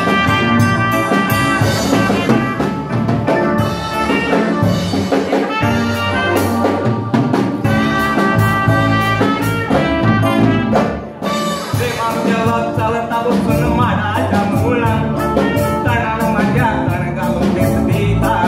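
Band music for a Konkani song: brass playing held melodic notes over a drum kit beat, dipping briefly about eleven seconds in.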